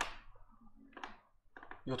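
A quiet pause in speech. A single sharp click comes right at the start and a brief soft noise about a second in, then a voice starts talking near the end.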